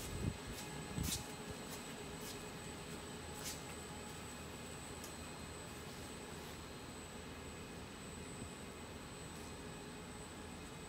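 Steady background hum of a shop with a faint high whine running under it. A few light knocks come in the first second or so, and another around three and a half seconds in.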